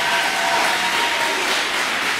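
Audience applauding steadily in a meeting hall.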